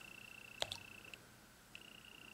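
Near-quiet room tone with a faint steady high-pitched whine that drops out briefly past the middle, and one small click about half a second in.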